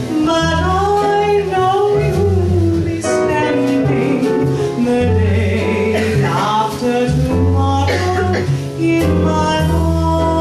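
Small jazz band playing a slow 1940s song live, with piano, double bass and drums and a smoothly gliding melody line over held double-bass notes.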